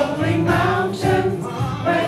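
Gospel choir singing together, with a steady beat underneath.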